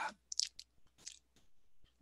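A short pause in speech holding a few faint mouth clicks and lip smacks, grouped about half a second in.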